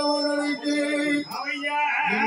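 Tamil villu paattu (bow-song) singing: a man's voice through a microphone holding long, drawn-out notes, with a short break about two-thirds of the way through.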